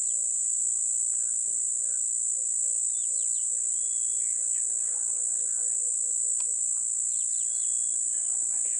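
Insects keep up a loud, steady, high-pitched drone throughout, with a few short bird chirps about three seconds in and again near the end. A faint low hum fades out after about six seconds, and there is a single sharp click shortly before.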